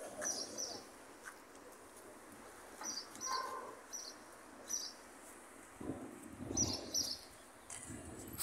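A small bird chirping: short, high chirps in twos and singles at uneven gaps. A low rumble rises and falls about six seconds in.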